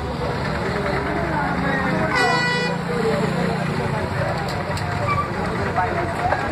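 Street traffic: a vehicle horn sounds once, briefly, about two seconds in, over a running engine and the chatter of people.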